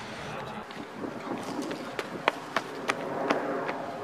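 A series of about eight sharp clicks or knocks at uneven spacing, starting about a second and a half in, over steady outdoor background noise.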